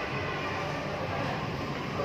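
Steady background noise of a busy shopping mall interior: an even hum with a low rumble.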